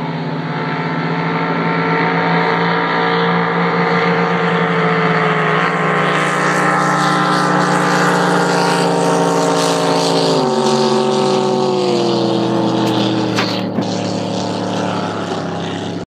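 Racing drag boat's engine running loud and steady at speed on a setup run down the course. Near the end its pitch falls in two steps as the boat slows.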